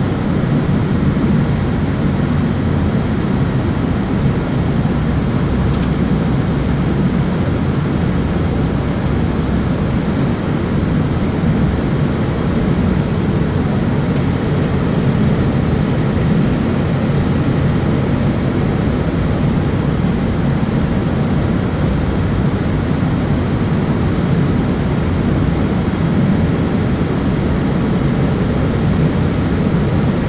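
Steady cabin drone of an ATR 72-600's twin Pratt & Whitney PW127M turboprops and propellers, heard from inside the cockpit during approach. The noise is deep and even, with a thin steady high whine above it.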